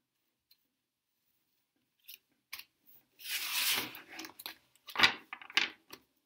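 Tarot cards being handled over a wooden table: starting about three seconds in, a sliding swish of a card drawn from the deck, then several sharp snaps and taps as cards are laid down.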